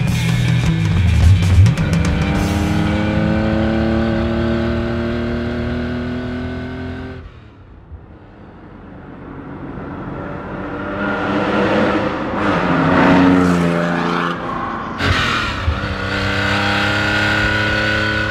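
1969 Porsche 911 T's air-cooled flat-six pulling hard, its pitch climbing, then fading almost away about halfway as the car moves off. It builds again as the car comes back, loudest around two-thirds of the way in, and pulls with rising pitch once more near the end.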